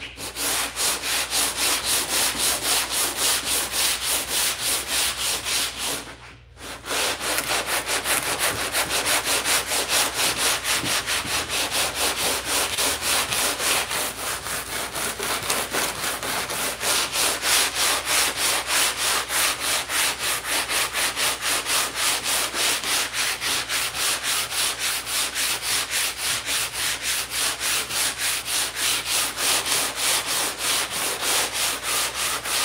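A Hutchins speed file, a long sanding board, pushed back and forth by hand over dried body filler on a car hood, rasping steadily at about two to three strokes a second with a brief pause about six seconds in. The paper is cutting the filler down level with the panel.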